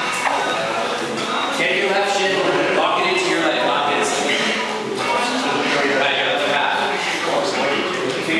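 Several people talking at once in a large room, voices overlapping so that no words come through.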